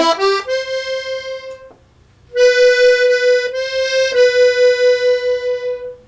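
Hohner piano accordion: a quick rising run of notes into a held single note that fades out, then after a short pause the same note held again for several seconds, its loudness pulsing about four to five times a second. The pulsing is bellows vibrato, made by rocking the accordion so the loosely held bellows shake the air going through the reed.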